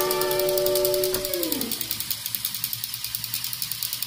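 A held music note slides down in pitch and dies away about a second and a half in. It gives way to a faint, even clicking of about five ticks a second from a battery-powered TrackMaster toy train running on its plastic track.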